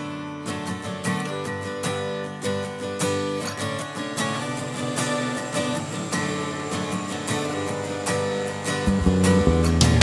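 Background music led by strummed acoustic guitar, with a louder, fuller low end coming in near the end.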